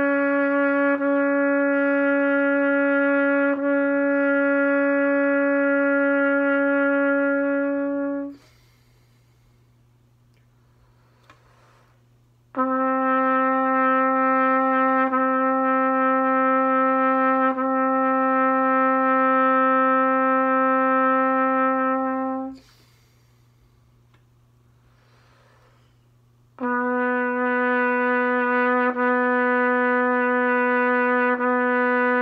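Trumpet playing a long-tone warm-up: sustained notes of about ten seconds each, every one a half step lower than the last. Breaths can be heard in the short pauses between the notes.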